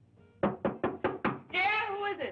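Five quick knocks on a wooden door, followed by a voice calling out.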